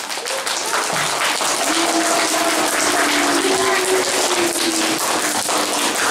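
Audience of children clapping, a dense, steady applause, with a faint held tone underneath from about two seconds in.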